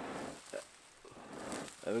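A person blowing long breaths into a smouldering tinder bundle of dried bracken to coax the ember into flame. There are two breathy blows, the second swelling up about a second in.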